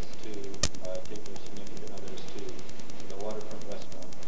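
A young man's voice speaking lines on stage, with one sharp click a little over half a second in.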